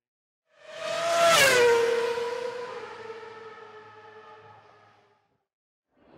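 A race car passing at speed: its engine note swells with a rush of noise, drops in pitch as it goes by about a second and a half in, then fades away over about three seconds.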